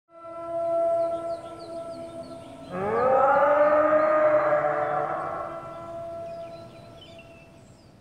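Soundtrack opening: a held chord of steady tones with faint bird-like chirps, then, about three seconds in, a long rising wail with several pitches that levels off and slowly fades.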